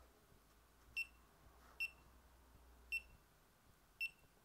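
GoPro Hero 3 action camera giving short electronic beeps as its mode button is pressed to step through the menu. There are three beeps about a second apart, with a fourth at the very end.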